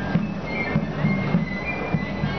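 Crowd chatter mixed with a brass processional band playing a march, with thin held high notes coming through.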